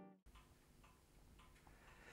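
Near silence: the last of an acoustic guitar track fading out right at the start, then faint room tone with a few soft ticks about half a second apart.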